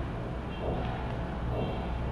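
Steady low background hum with no distinct event.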